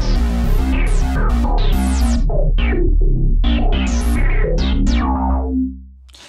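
Roland Boutique JX-08 synthesizer playing a fast arpeggiated pattern over a sustained deep bass note, the notes washed with reverb. The sound fades away near the end.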